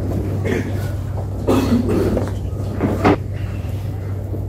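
Background noise of a chess playing hall: a steady low hum, with a short stretch of voice-like noise about a second and a half in and a sharp knock about three seconds in.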